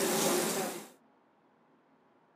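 A steady hiss that cuts off abruptly about a second in, followed by near silence.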